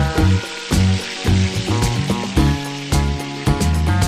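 Wide rice noodles sizzling as they hit a hot oiled pan and are stir-fried with dark soy sauce, the sizzle strongest in the first half, over background music.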